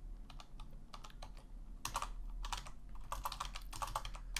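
Computer keyboard typing: short, irregular runs of keystroke clicks as code is typed.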